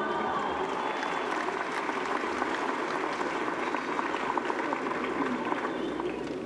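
Audience applauding: many hands clapping at once, steady throughout.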